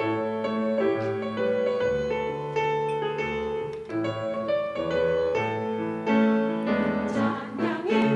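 Grand piano playing the introduction to a choir anthem, its notes starting suddenly. A mixed choir comes in singing near the end.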